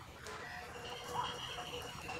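Faint outdoor background in a pause between speech, with a distant bird calling briefly about a second in over a thin, steady high note.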